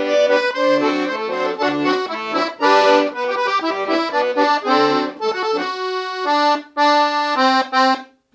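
Leticce piano accordion playing a melody in thirds on the right-hand keyboard, a slow polka-like phrase in even notes, with two short breaks near the end before it stops.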